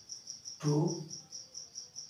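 Insect chirping steadily, a high pulse repeating about seven times a second, with a man saying one short word partway through.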